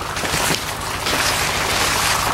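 Corn leaves rustling and brushing against a person pushing into the rows of a cornfield, a steady rustle throughout.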